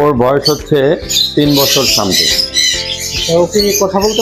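Parrots and other cage birds squawking and chirping, over background music.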